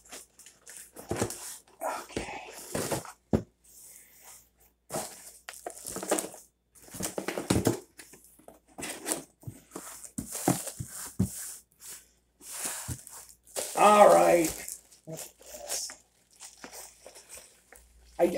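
Clear plastic packaging bag crinkling and cardboard box rustling in short, irregular bursts as a new toaster is lifted out of its box and handled in its wrapping.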